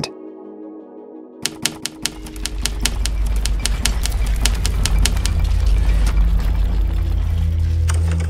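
Typewriter keys clacking in quick, irregular strokes, starting about a second and a half in, over a low music drone that swells toward the end. A soft, held music chord comes before the typing.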